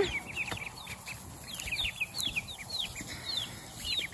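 Young ducklings, about a week or ten days old, peeping in a steady run of short, high chirps that each fall in pitch, several a second.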